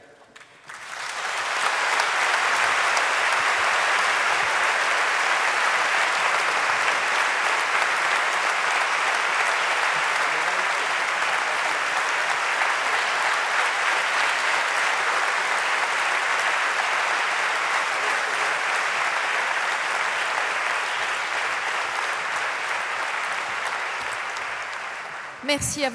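A large audience applauding steadily. The applause starts about a second in and eases slightly near the end.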